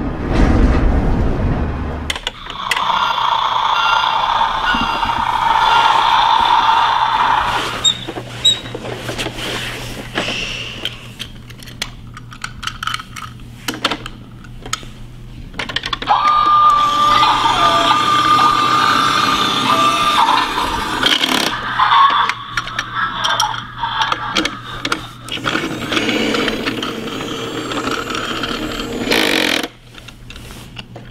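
Electronic sound effects from a battery-powered toy side-loader garbage truck, coming in three bursts of a few seconds each, one holding a steady beep-like tone, with clicks and rattles of hard plastic between them as the toy's can and arm are handled. A low rumble opens it and stops about two seconds in.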